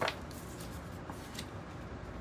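Tarot card being drawn from the deck and turned over onto a wooden table: a few faint, light clicks over quiet room hiss.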